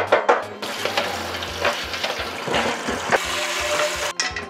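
Kitchen tap running hard, water rushing and splashing into a metal pot in a stainless steel sink. It starts about half a second in and cuts off at the end.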